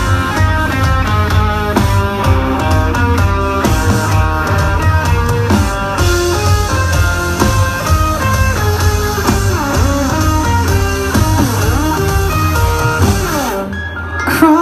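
Rock band playing live, heard loud from the crowd: an electric guitar riff over drums and heavy bass, with no singing. The music thins briefly near the end.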